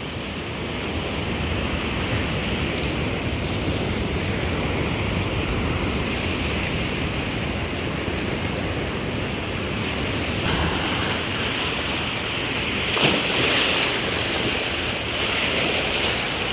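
Ocean surf washing up a sand beach: a steady rush of waves, with wind on the microphone. A wave comes in a little louder about two-thirds of the way through.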